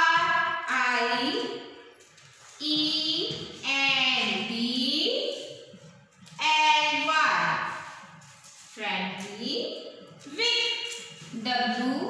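Young children's voices reciting aloud in a drawn-out sing-song chant, in phrases of one to two seconds with short pauses between.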